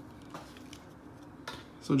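Trading cards being handled and shuffled in the hands: faint light rustling with a few small clicks, one about half a second in and two more around a second and a half in.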